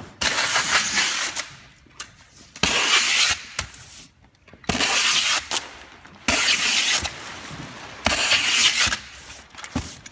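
Packing tape pulled off a handheld tape-gun dispenser onto a cardboard box in five long runs, each about a second, with short pauses and a few knocks between them.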